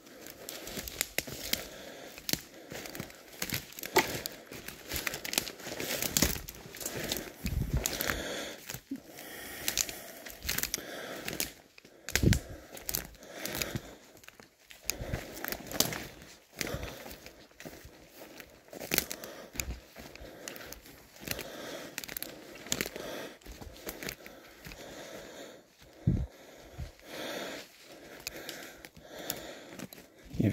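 Footsteps pushing through dry conifer brash and fallen twigs, with irregular crackling and snapping.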